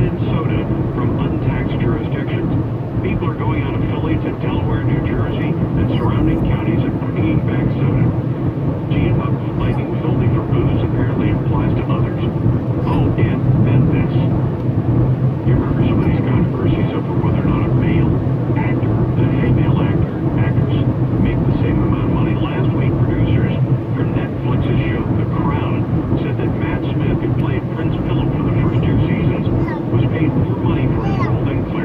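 Steady low drone of a car driving, heard from inside the cabin, with indistinct speech going on over it.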